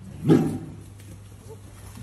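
A young white tiger cub gives one short growl, starting about a quarter second in and dying away within half a second.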